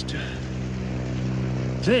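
Steady engine drone, one even low hum with its overtones, holding constant pitch and level.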